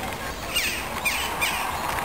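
Small birds calling: a few short chirps that sweep downward in pitch, roughly half a second apart, over steady outdoor background noise.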